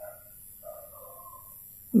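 A faint bird call in the background, drawn out for about a second.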